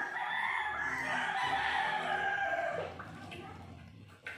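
A rooster crowing: one long drawn-out call that falls in pitch and fades out about three seconds in.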